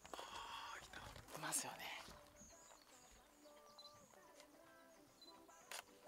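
Faint, indistinct speech over quiet outdoor ambience, loudest about a second and a half in, with a single sharp click just before the end.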